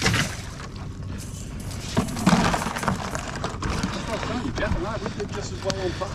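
Water splashing and pouring off a wire crab pot as it is hauled up out of the water, then a clatter about two seconds in as the pot is handled.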